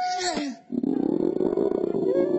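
A long, low pulsing growl-like rumble from the caged cartoon rabbit, starting just under a second in, after a couple of short falling glides.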